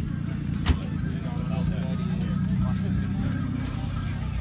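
A car engine idling with a steady low rumble, with a single sharp click about three-quarters of a second in.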